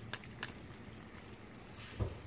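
Water boiling gently in a small saucepan on a gas burner, a faint steady bubbling, with two small sharp clicks in the first half-second.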